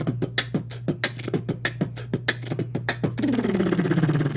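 Beatboxing: a fast, even run of mouth-made drum hits, kick and snare sounds, for about three seconds. Near the end it gives way to a held vocal tone that falls slightly in pitch.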